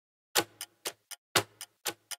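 Countdown-timer clock ticking: crisp ticks about twice a second, each louder tick followed by fainter clicks.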